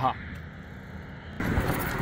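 A steady low outdoor rumble by a road, then, about one and a half seconds in, a sudden switch to a louder even rushing noise: wind on the microphone and the bike moving along a dirt forest trail.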